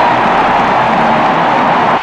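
Football stadium crowd cheering a touchdown, a loud steady roar as carried on an old radio broadcast.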